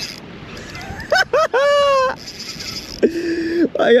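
A man's excited whoop as a hooked fish pulls hard on the bent spinning rod: a few short rising yelps about a second in, then one longer held call, followed by a brief low hum.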